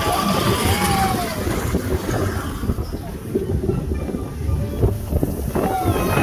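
Steel roller coaster's mine-car train running along its track, with a steady rumble and wind buffeting the microphone; it eases a little midway and builds again near the end. A few riders' voices are heard near the start.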